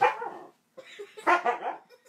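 Siberian husky vocalizing in two bursts: a short one at the start and a longer one about a second in.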